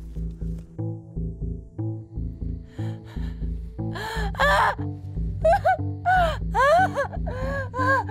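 Tense film score with a fast pulsing low beat. From about halfway, a woman cries out in pain again and again, gasping between cries, as in labour.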